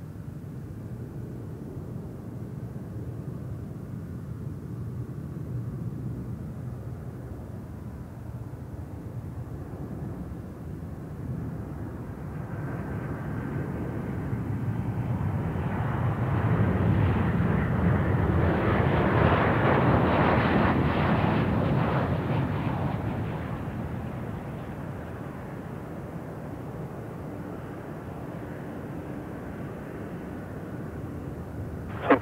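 Boeing 737-800 jet engines on final approach: the rumble builds as the airliner nears, is loudest as it passes low about two-thirds of the way through, then fades. A thin high whine is heard briefly as it approaches.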